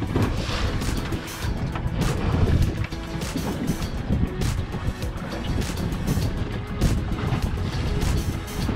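Wind buffeting the microphone and water splashing against the hull of a small inflatable boat, an irregular rough rush strongest at the low end, with music underneath.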